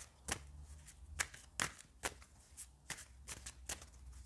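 A deck of tarot cards being shuffled by hand, a soft run of short card snaps and flicks coming about two or three times a second at an uneven pace.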